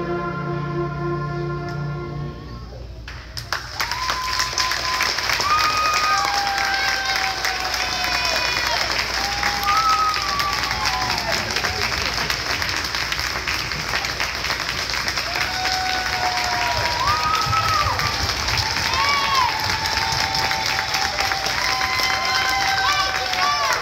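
A choir and orchestra hold a final chord that fades out in the first few seconds; then an audience breaks into loud applause with cheering and whoops that keep on through the rest.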